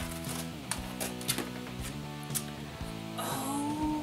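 Background music with a steady beat, chords changing about every half second. A short rustle comes near the end.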